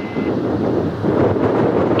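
Jet engines of a Boeing 787 Dreamliner on its landing roll, a steady loud rush.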